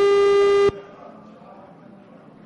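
A single steady, pitched electronic-sounding beep that cuts off abruptly under a second in, followed by low background noise.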